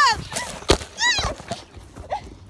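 A woman's high-pitched shrieks, the first gliding down in pitch, during a scuffle. About two-thirds of a second in there is a sharp thud as the phone that is filming drops to the ground, then another short cry just after a second in.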